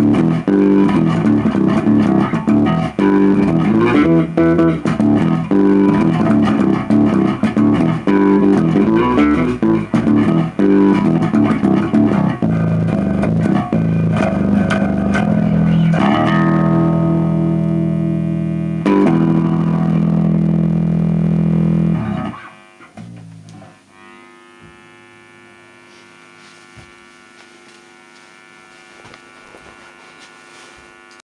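Electric bass (Hohner The Jack Bass Custom) played through a CEX Mud Pout analog octave-divider pedal into a Laney R2 amp: a run of quick, thick notes, then two long held notes that ring out. About two-thirds of the way through the playing stops, leaving only a low steady hum.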